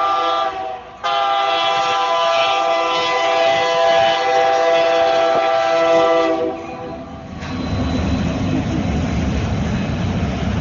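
Diesel locomotive horn sounding a chord of several notes: one blast cuts off about a second in, then a long blast holds for about six seconds. After it comes a steady rumbling noise.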